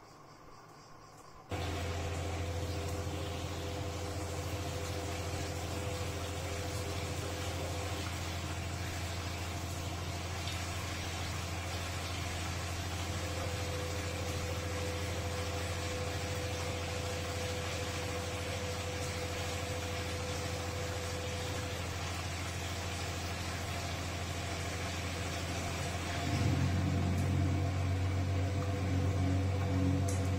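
Castor C314 front-loading washing machine starting its drum motor about a second and a half in and then turning the wet laundry during the wash phase of a heavy-duty cotton programme, with a steady low motor hum. The hum grows louder and fuller about 26 seconds in.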